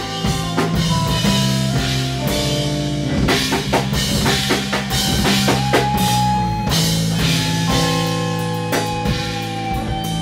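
Metal band playing live: electric guitars and bass holding low notes over a drum kit with frequent drum hits.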